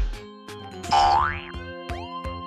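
Background music with a cartoon sound effect whose pitch slides upward, about a second in.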